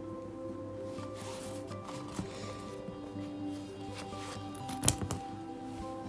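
Soft background music with steady held notes, and a short sharp click about five seconds in.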